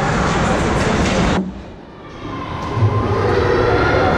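Ice hockey arena game noise: a loud, steady wash of skates on ice and crowd sound. It drops away suddenly for under a second about a third of the way in, then returns.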